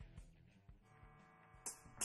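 Near silence: studio room tone with a few faint clicks, and a brief sharper sound near the end.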